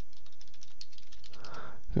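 Light, rapid clicking of a computer keyboard: several keystrokes a second as a web address is typed.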